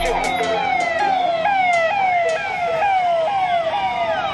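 Police vehicle siren sounding a fast repeating falling sweep, about three sweeps a second, then switching to a different tone pattern near the end.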